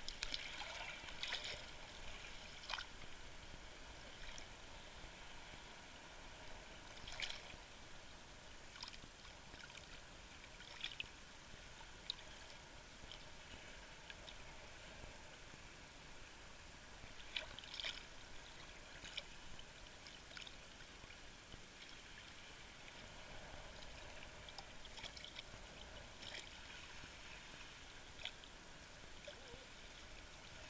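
Faint sea water lapping and splashing at the surface against a camera's waterproof housing, with scattered brief splashes and crackles every few seconds.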